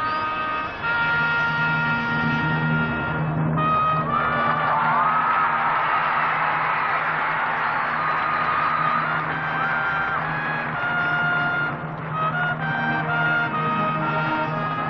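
A marching band playing, with its brass section holding sustained chords and a few sliding notes, over a steady low bass line.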